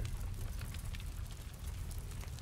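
Steady background noise, an even hiss with a low hum and faint scattered crackles, between spoken phrases.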